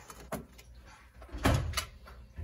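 Dishes being set down and nudged into place on a bamboo cabinet shelf: a light click, then a louder knock about a second and a half in, and a short click just after.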